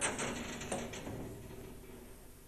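Metal baking tray scraping and rattling on the oven rack as it is slid out of the oven: a sharp start, then a rough scrape that fades over about a second.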